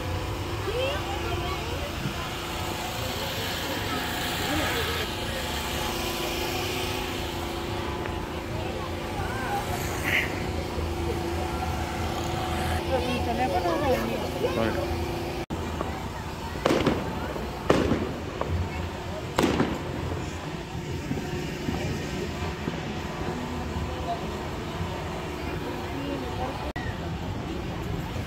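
Three sharp firecracker bangs, a second or so apart, past the middle, over a steady background of voices.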